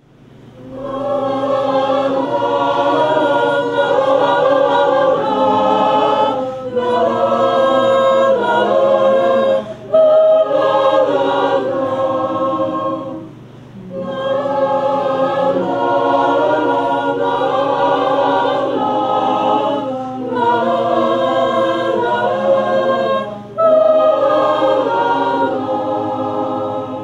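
Mixed choir of women's and men's voices singing, in long phrases broken by several short pauses.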